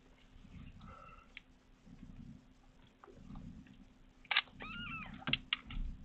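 A kitten mewing: a faint short mew about a second in, then a clearer mew that rises and falls near five seconds. A few sharp clicks come between about four and six seconds.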